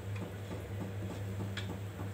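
Rice and chicken curry for biryani coming to a simmer in an aluminium pot, with a few sharp ticks and pops over a steady low hum.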